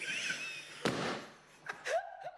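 A man laughing breathily, then a sudden sharp burst of noise about a second in that fades within half a second.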